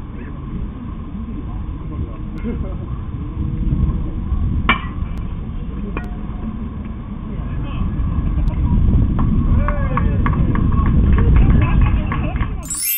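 A bat strikes a pitched baseball with one sharp crack about five seconds in. A steady low rumble runs under it and grows louder toward the end, with distant voices of players calling on the field.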